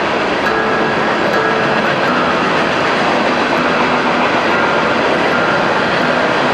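Acoustic guitar being tuned: a few single notes held and let ring now and then, under a steady rushing background noise that is the loudest thing heard.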